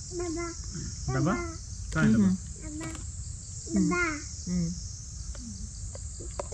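A steady, high-pitched insect chorus at dusk, with short snatches of voice breaking in over it several times.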